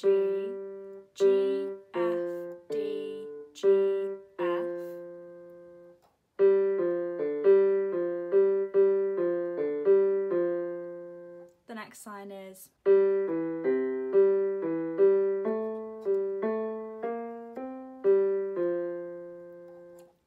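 Casio Casiotone keyboard on a piano voice playing a slow right-hand melody one note at a time, each note struck and left to fade. The first few seconds are spaced notes about a second apart; after a short break come two quicker runs of notes, the second starting about 13 seconds in.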